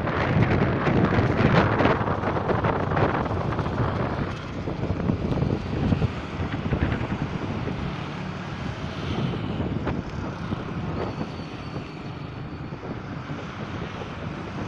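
Road traffic going past on a city bridge, with wind buffeting the microphone. It is loudest in the first few seconds, then settles to a lower, steady rumble.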